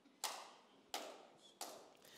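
Three faint taps, each short and dying away quickly, spaced about two-thirds of a second apart.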